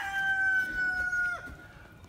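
Rooster crowing: one long held note that drops away sharply about a second and a half in.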